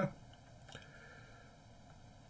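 Faint tap and short scratch of a stylus drawing on a tablet, about three quarters of a second in, over low room hiss.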